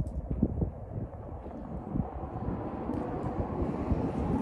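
Wind buffeting the microphone: a low rumble with irregular thumps.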